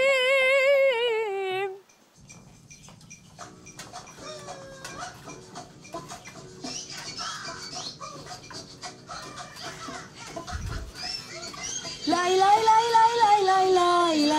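A woman singing with a strong vibrato, cut off suddenly about two seconds in. A quiet stretch of scattered short instrument notes and knocks follows. Near the end a woman sings loudly again with wide vibrato into a studio microphone, with a band.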